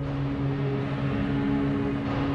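Eerie background music: a few low tones held steadily, like a sustained drone.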